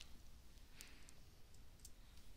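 Near silence with two faint clicks about a second apart, from the computer controls as the presentation slide is advanced.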